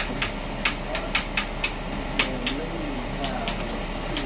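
A plastic spice shaker of sage shaken and tapped over a pot of ground meat: a run of sharp, irregular clicks, two or three a second, over a steady low hum.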